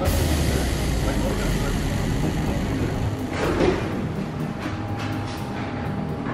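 Busy indoor public-space ambience: indistinct background chatter with a steady low rumble, and a brief louder murmur of voices a little past halfway.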